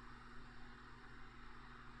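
Near silence: faint room tone, a steady low hum under a light hiss.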